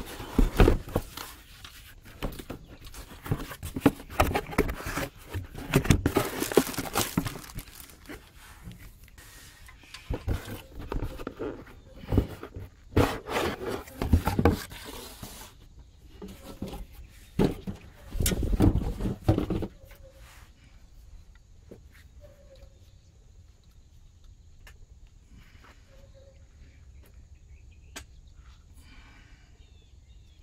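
Cardboard box and packaging rustling, knocking and scraping in irregular bursts as a new water pump is unpacked and handled. It stops about twenty seconds in, leaving a faint outdoor background with a thin, steady high tone.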